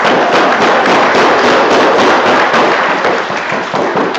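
A large group singing together loudly over hand drums being beaten, the voices and drum strikes merging into one dense wash of sound.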